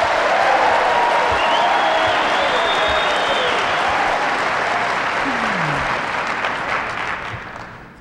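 Audience applauding, holding steady and then dying away near the end.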